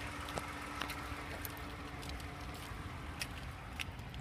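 The 2012 Toyota Highlander's 3.5-litre V6 idling: a steady low hum with a faint steady tone, and a few light clicks over it.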